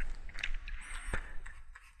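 A couple of faint, sharp clicks at a computer, about half a second and just over a second in, over low room noise.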